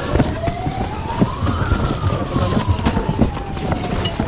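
Cardboard boxes and packaged goods being shoved and knocked about while rummaging through a crowded bin, with a steady crowd rumble. Over it, one long siren-like tone rises for a second and a half, then slowly falls.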